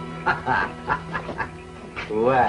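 A man laughing in short, quick bursts, over sustained background music.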